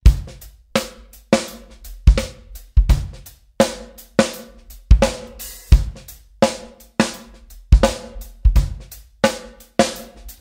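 Drum kit playing a steady beat of kick, snare and cymbal hits, about three hits every two seconds, starting suddenly out of silence as the song's intro, with a faint sustained pitched tone underneath.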